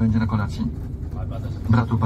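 A man's voice speaking, with no words that can be made out.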